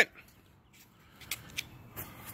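The tail of a man's shout cut off at the very start, then near silence, with a few faint short taps in the second half.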